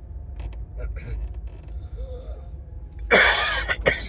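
A man coughs once into his hand about three seconds in, a short, loud, noisy burst over the steady low rumble of a moving car's cabin.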